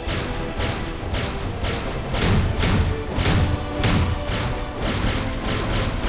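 Cartoon laser-cannon fire sound effects, a rapid run of shots about two a second with heavier booms in the middle, over a dramatic music score.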